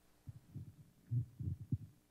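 Handling noise on a handheld audience microphone: a handful of soft, low thumps in quick succession as it is taken in hand just before the questioner speaks.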